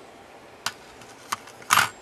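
Small metal parts being handled: two light clicks, then a short louder scrape near the end, as a small brass bridge strip is picked up and fitted back onto the circuit board.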